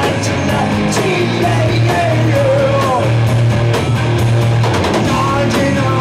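Live rock band playing loud: electric bass, electric guitar and drum kit with a singing voice, the bass line steady and the drums keeping a regular beat.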